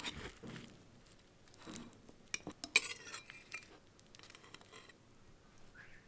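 Metal knife and serving spatula clinking and scraping against a cut-glass plate as a piece of crisp baklava is cut and lifted. There are a few light, sharp clicks, most of them between about two and three and a half seconds in.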